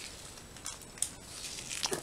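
Faint handling of small plastic food sachets on a wooden table: a soft rustle with a few light clicks, about a second in and again near the end.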